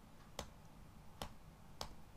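Three sharp clicks, spaced unevenly across the two seconds, from a computer keyboard and mouse being used to edit code, over a faint low hum.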